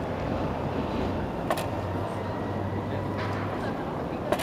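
Outdoor street background: a steady low rumble that swells between about one and three and a half seconds in, with a sharp click about a second and a half in and a fainter one near the end.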